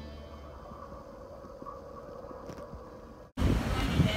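Faint low hum and hiss with a trace of a steady tone as music dies away, then after about three seconds an abrupt cut to louder outdoor ambience with wind buffeting the microphone.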